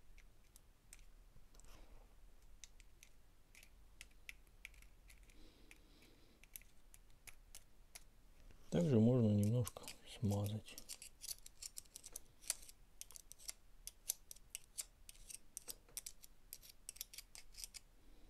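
Light metallic clicks and ticks of small steel planet gears being fitted and turned by hand in the planetary gearbox of a Makita DF001G drill-driver, growing denser in the second half. A person's voice sounds briefly twice, about nine and ten seconds in.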